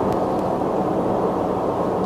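Steady background noise, strongest in the low and middle range, with no distinct events.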